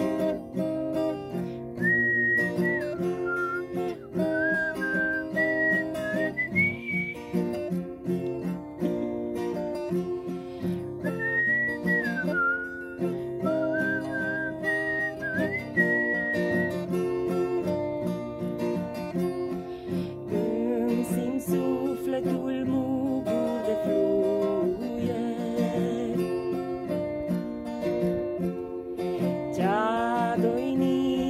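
Acoustic guitar strummed steadily. A woman whistles the melody in two phrases over the first half, and in the second half a wordless voice takes up the tune.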